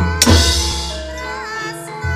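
Gamelan music accompanying a wayang kulit shadow-puppet scene. A singer's wavering held notes sit over a sustained low tone, with drum strokes and a loud crash about a quarter second in that rings away over more than a second.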